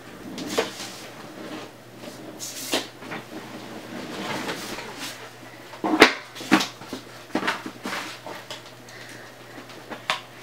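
Small objects knocking and clattering as items dropped on the floor are picked up, with handling and rustling between the knocks. The loudest knock comes about six seconds in, and a few more follow soon after it.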